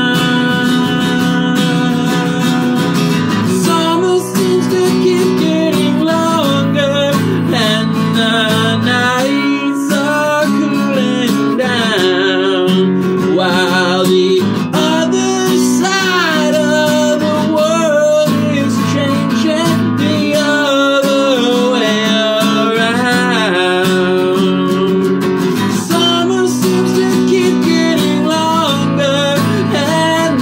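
A man singing a song while strumming a sunburst Epiphone acoustic guitar. The first few seconds are strummed chords alone before the voice comes in.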